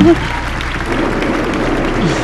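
Steady road and engine noise inside a small moving car's cabin, an even hiss over a low rumble, with faint voices under it.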